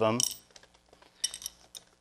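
A short cluster of small metallic clicks and taps a little over a second in, with a few fainter ones near the end, as a holding nail and scrap-lead stop piece are worked loose from the leaded glass panel.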